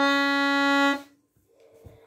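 Excelsior accordion sounding one steady held note on its reeds during a tuning check, which stops about halfway through. Faint handling sounds follow, with a soft knock near the end as the accordion is moved.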